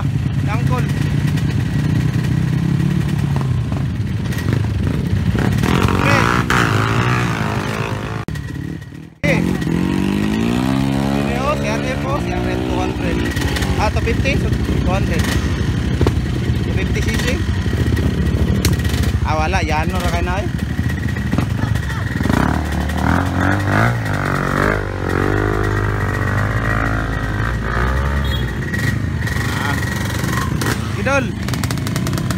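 Dirt bike engines running at low revs with people talking over them. The sound breaks off briefly, about nine seconds in.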